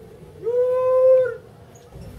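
A vegetable hawker's drawn-out call of "sayur": one long, steady sung note held for about a second, rising into pitch about half a second in.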